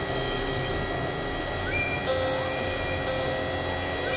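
Experimental electronic drone music from synthesizers: a high steady tone is held, and a lower tone comes in about halfway through. A few short upward pitch glides sit over a low rumbling noise bed.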